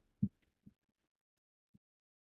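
A few faint, dull keystrokes on a computer keyboard, heard as short low thuds at irregular spacing.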